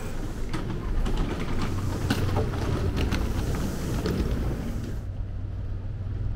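Steady low rumble and hum inside a stopped electric train car, with a few faint clicks; the higher hiss drops away about five seconds in.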